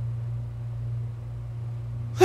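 A steady low hum with a faint even hiss under it, the room and recording background heard in a pause between spoken words.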